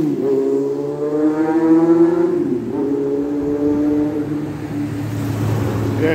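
A motor vehicle engine running loudly as it accelerates along the street, its pitch dipping briefly about halfway through, as at a gear change, then holding steady and fading near the end.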